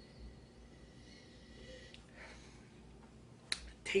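Quiet room with a faint sniff about two seconds in and a single sharp click near the end.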